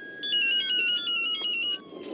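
Mobile phone ringtone: a quick electronic tune of high stepped beeps lasting about a second and a half, over a faint tone that slowly falls in pitch.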